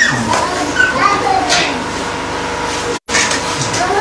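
Several people's voices talking and calling over one another, indistinct chatter with no clear words. The sound cuts out for an instant about three seconds in.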